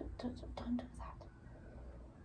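Soft, hushed speech close to a whisper in about the first second, then only low room noise.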